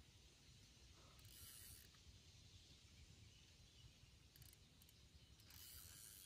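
Mostly near silence, with the faint ratchet-like clicking of a spinning fishing reel as a hooked fish is played, coming twice: about a second in and again near the end.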